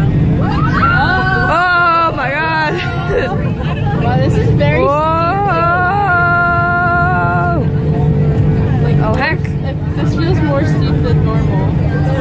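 Steady loud rumble of an airliner's engines and cabin during the takeoff roll and lift-off. Over it, a woman gives two long, rising excited "oh!" cries that hold on a high note.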